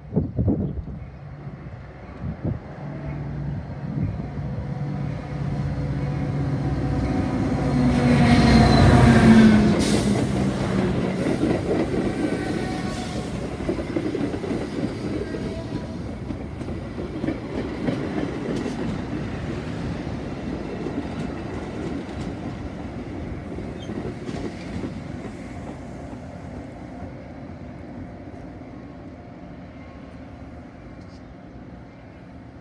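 Diesel-hauled Metra commuter train approaching and passing close by. The locomotive's engine builds to its loudest about nine seconds in, its pitch dropping as it goes past. Then the double-deck cars roll by, and the rumble fades slowly as the train draws away.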